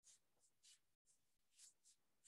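Faint, short wiping swishes of a sponge eraser rubbing across a whiteboard, about five strokes. The audio cuts to silence for a moment about a second in.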